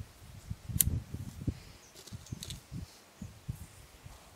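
Rogers & Spencer percussion revolver being handled at the cylinder, most likely capped, with a sharp metallic click about a second in and a couple of fainter clicks a little past halfway. Low, irregular thumps run underneath.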